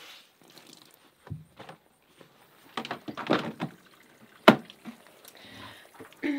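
Wet clothes being wrung out by hand, with bursts of squeezing and splashing water falling into the washer tub, and one sharp knock about four and a half seconds in.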